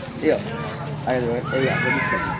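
People's voices talking, over a steady low hum.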